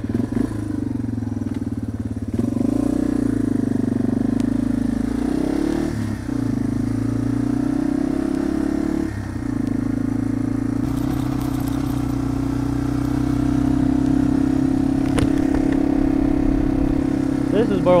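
Yamaha TW200's single-cylinder four-stroke engine pulling away and running on, its note dipping briefly three times as it changes up through the gears.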